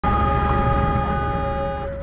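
Vehicle horn held for about two seconds over the low rumble of road noise. Its higher tones stop just before the end while the lowest tone carries on and fades.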